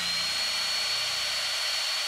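A large power drill running at a steady speed: a loud, even rush with a thin, high, steady whine above it.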